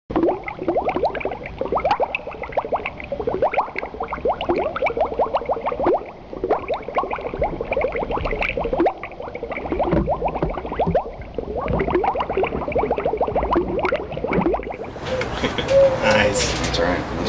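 Rapid bubbling and blooping liquid, a dense stream of short gliding blips like a beaker boiling. About a second before the end it gives way to a fuller, louder room sound.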